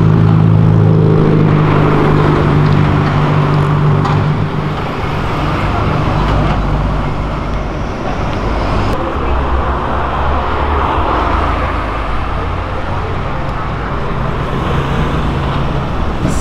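Car traffic: a steady engine hum for the first few seconds, fading into the continuous rumble of cars passing on the road.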